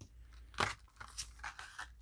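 Foil booster-pack wrappers and clear plastic packaging crinkling and rustling as they are handled, in a few short bursts, the loudest about half a second in.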